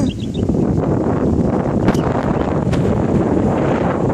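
Wind blowing across the microphone: a loud, steady low rumble, with two faint ticks about two seconds in.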